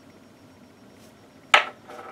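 Quiet room tone, then a single sharp click about one and a half seconds in and a smaller one near the end: a small Dremel bit or mandrel being set down on a wooden workbench.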